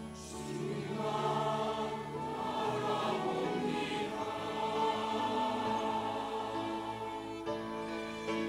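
A large mixed church choir singing a sacred anthem in harmony, accompanied by a string ensemble of violins and cello.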